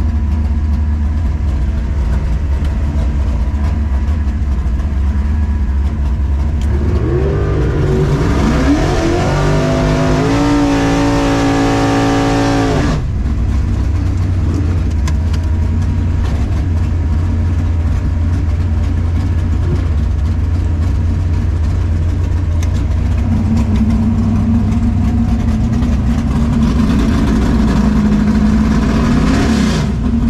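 1964 Chevelle drag car's engine heard from inside the cabin: running at a steady low rumble, revving up about seven seconds in, held at high revs for several seconds and cut off sharply. The revs rise again near the end.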